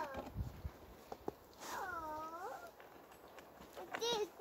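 A single drawn-out pitched call, about a second long and a little before halfway, its pitch dipping and then rising again. A few light clicks come before it.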